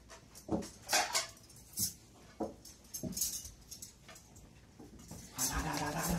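Plates and dishes being set down on a cloth-covered dining table: scattered short clinks and knocks. Near the end, a brief low pitched hum.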